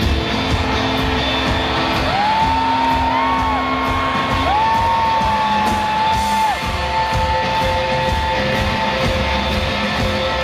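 Live rock music from a guitar-and-drums duo: distorted electric guitar and drums over a steady cymbal beat. In the middle come two long held high notes, each sliding up at the start and dropping away at the end.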